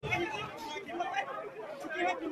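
Several people talking at once, their voices overlapping, starting abruptly.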